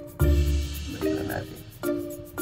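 Background music: sustained pitched notes changing about every second, with a deep bass note just after the start.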